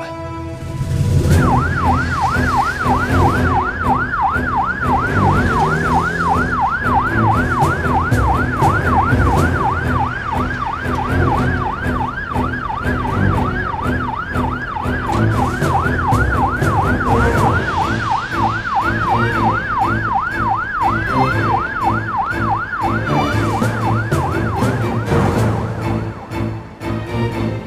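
Police car siren in a fast yelp, its pitch rising and falling rapidly over and over. It starts about a second in and stops just before the end.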